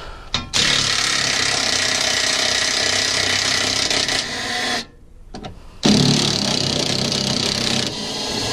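Makita cordless impact wrench hammering as it loosens the front suspension bolts. It runs for about four seconds, stops for about a second, then runs again for about three seconds.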